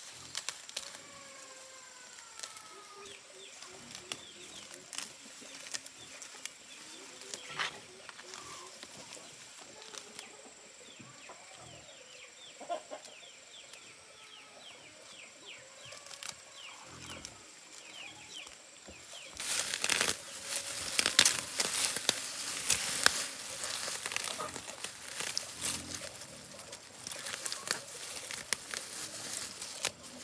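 Grass and weeds being pulled by hand from the cracks of a stone path, tearing and rustling with crackling snaps of roots and stems; this is loud from about two-thirds of the way in. Before that, faint bird calls.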